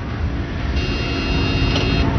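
Steady roadside noise of a professional bike race as the bunch of riders passes close by, with a faint high whine in the middle.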